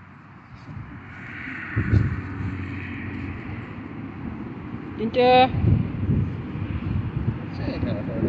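Low wind rumble on the microphone. About five seconds in comes one brief high-pitched whine, lasting about half a second.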